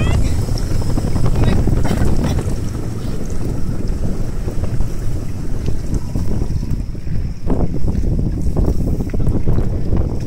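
Wind buffeting the microphone aboard a moving towing watercraft, a dense low rush of wind and boat-over-water noise with no clear engine note.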